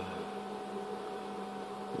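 Steady hum with an even hiss from the running HHO torch rig, a small water-electrolysis gas torch burning against a razor blade, with no sudden events.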